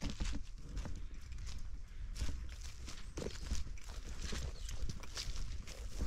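Footsteps through grass and dry leaves: an uneven run of soft steps and crackles, a few each second.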